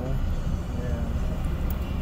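Steady low rumble of an Isuzu car's engine and tyres, heard from inside the moving cabin, with a faint voice near the middle.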